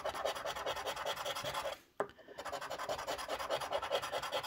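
A coin scratching the latex coating off a paper scratch-off lottery ticket in quick, repeated rasping strokes. There is a short break about halfway, ended by a click as the coin meets the card again.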